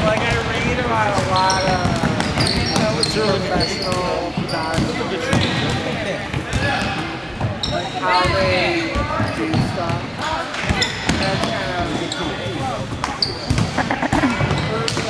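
Youth basketball game in a gym: a basketball bouncing on the hardwood floor and sneakers squeaking in short high chirps, under steady indistinct voices of players, coaches and spectators.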